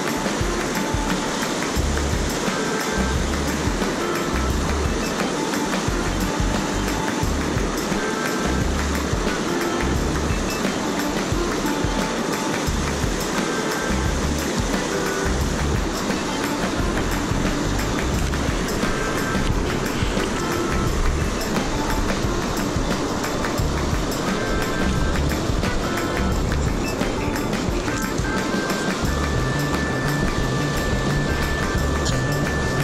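Instrumental background music with short held notes and a recurring bass line, over the steady rush of whitewater in a rocky creek.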